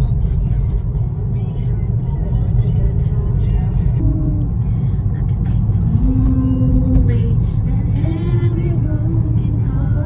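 A car's engine and road noise rumbling steadily inside the cabin, with a pop song playing and a voice singing along to it.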